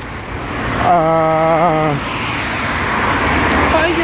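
Road traffic: a car passing close by, its tyre and engine noise swelling through the second half. About a second in, a man's voice holds one steady vowel for about a second.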